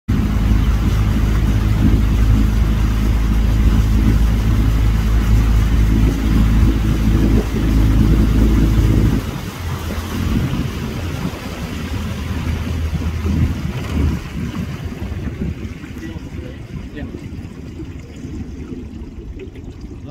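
Boat motor running steadily, then throttled back sharply about nine seconds in to a low idle that fades away a few seconds later.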